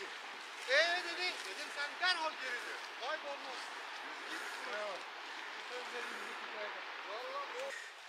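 Faint, indistinct talk from a group of hikers some way off, in short scattered phrases over a steady background hiss.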